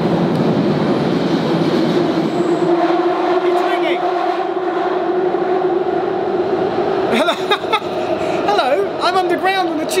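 London Underground Jubilee line train running through a deep tunnel: really noisy, a constant rumble and rush with a steady humming tone that comes up a couple of seconds in. A man's voice starts talking over it about seven seconds in.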